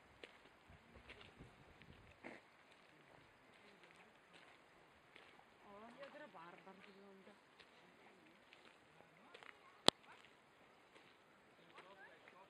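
Faint footsteps on a gravel path with quiet outdoor ambience. A voice murmurs briefly about halfway through, and a single sharp click stands out later on.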